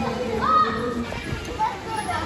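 Chatter of several people's voices, children among them, with one higher voice rising about half a second in.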